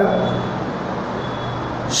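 Steady background noise: a low hum under an even hiss, with no distinct events.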